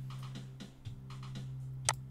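A bass and drum loop playing back through a DAW: a steady, sustained low bass note with light ticking drum hits over it. The bass dips briefly about a second in, the ducking of sidechain compression keyed from the kick drum. A sharp click near the end is the loudest sound.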